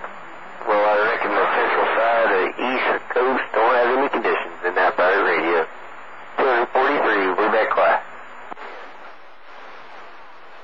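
A distant voice received over CB radio on channel 28, narrow and tinny, with a steady hiss of static behind it. The talking starts about a second in and stops about two seconds before the end, leaving only the hiss.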